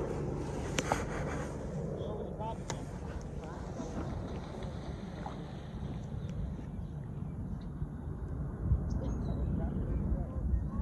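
Wind rumbling on the microphone, with faint distant talk and a couple of sharp clicks about one and three seconds in.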